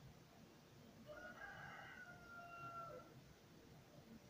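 Faint room hiss with one faint, drawn-out animal call starting about a second in and lasting about two seconds, held on one pitch and dipping at the end.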